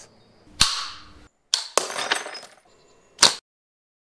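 Sharp snaps and impacts from mousetrap-powered steel-ball shots: one hit about half a second in that rings out briefly, a small cluster of hits around a second and a half, and the loudest single snap a little after three seconds.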